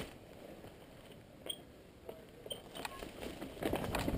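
A quiet pause in mountain biking on a rocky dirt trail, with only a few faint clicks and short high chirps. Near the end the bike starts to rattle and crunch over the rocky trail again.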